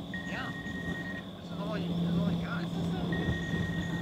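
A mobile phone ringing: two long, steady high beeps about two seconds apart, over a low steady hum that grows louder partway through.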